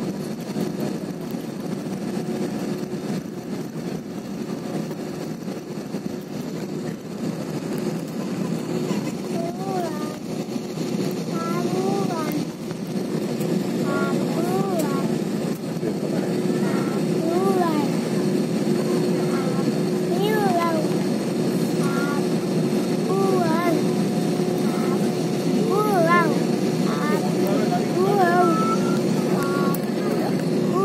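Jet airliner's engines heard from inside the passenger cabin during taxi: a steady hum with a held tone, growing a little louder about halfway through. Voices talk in the cabin from about ten seconds in.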